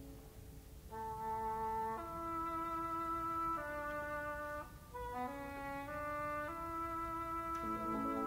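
Symphony orchestra playing a succession of sustained chords, each held about a second. A soft held chord fades out, louder chords come in about a second in, and there is a short break in the sound near the middle.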